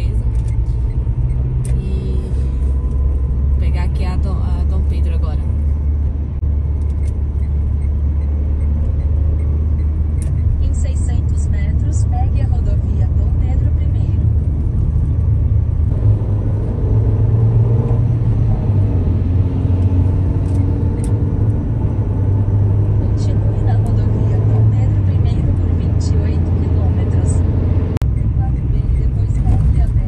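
Small car's engine and tyre noise heard from inside the cabin while cruising on a highway: a steady low drone that shifts in pitch a couple of times, with a few faint ticks.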